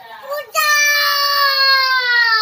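A toddler's loud, long held cry, one high 'aaah' that starts about half a second in and stays on one pitch, sagging slightly near the end.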